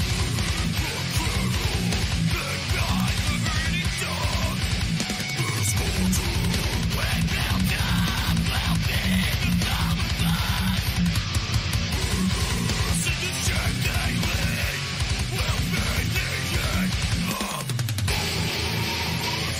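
Beatdown deathcore song playing: heavily distorted electric guitar riffing over a fast, dense low-end rhythm, with a brief break about five seconds in.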